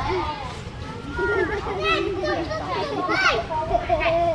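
Several people talking and calling out, children's voices among them, over a steady low rumble.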